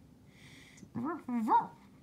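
A child's voice giving two short, rising, dog-like yelps about a second in, the second louder, in a playful, laughing manner.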